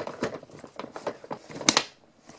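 Hard plastic toy playset pieces clicking and knocking as one is pressed into place, with a sharper snap about 1.7 seconds in as the piece locks in.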